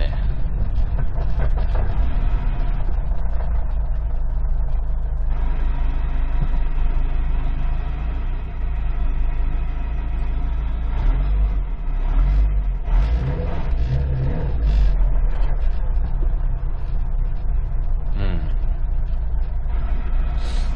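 Subaru WRX STI's EJ20 turbocharged flat-four engine and road noise heard from inside the cabin while driving in slow traffic. The engine note changes around five seconds in, and the low rumble grows louder from about eleven to fifteen seconds as the car pulls through the gears.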